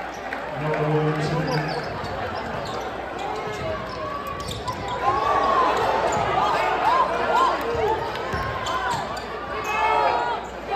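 Basketball play on a hardwood court: sneakers squeaking in many short rising-and-falling chirps, thickest in the second half, with the ball bouncing, over the chatter of an arena crowd. A brief low steady tone sounds about a second in.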